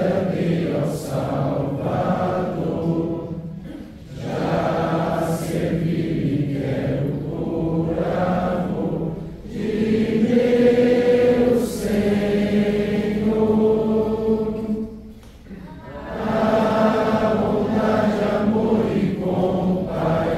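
A congregation singing a hymn together, many voices holding long notes in phrases, with short breaks between lines about every five seconds.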